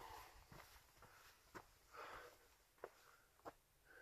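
Near silence, with a few faint footsteps on a dirt trail about a second apart and a soft breath in the middle.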